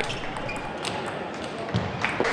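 Hall ambience from table tennis match footage, with a few faint knocks of the ball.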